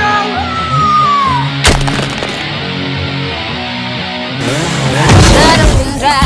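Dramatic orchestral film score with sound effects: a high falling tone in the first second and a half, a sharp crash about two seconds in, and a loud rush of noise swelling up with the music near the end.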